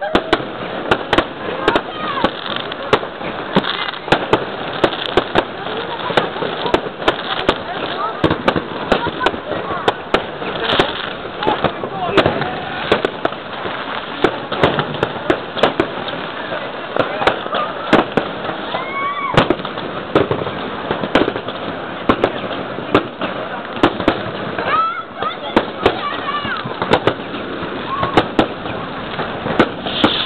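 A dense, continuous barrage of New Year's fireworks: many sharp bangs and crackling pops from rockets and firecrackers, several a second, with no break.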